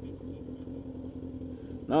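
Motorcycle engine idling steadily and quietly, with an even hum and no revving. A voice cuts in at the very end.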